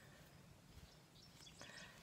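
Near silence: faint background noise.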